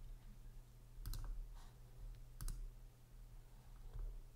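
Faint clicking at a computer: a quick pair of sharp clicks about a second in, a lighter click just after, and another sharp click about two and a half seconds in, over a low steady hum.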